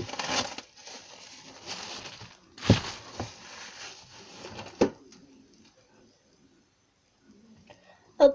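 Plastic bag crinkling and rustling as slime is pulled out of it by hand, with a couple of sharper crackles. The rustling stops about five seconds in.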